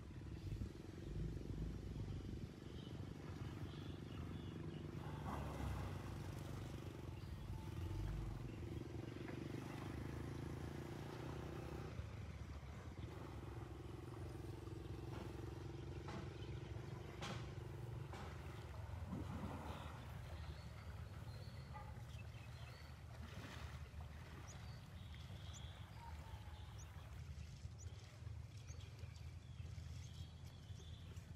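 Outdoor low rumble with a steady motor-like hum that breaks off briefly about twelve seconds in and stops about eighteen seconds in, with a few short sharp clicks later on.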